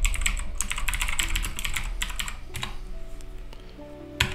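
Typing on a computer keyboard: a quick run of keystrokes for about two and a half seconds, then a single keystroke, with quiet background music.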